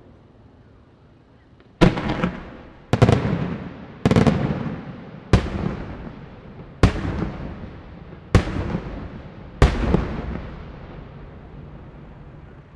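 Aerial firework shells bursting: seven sharp bangs about a second to a second and a half apart, starting about two seconds in, each trailing off in echo.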